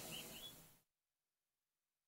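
Near silence: faint background hiss fading out, then dead silence from just under a second in.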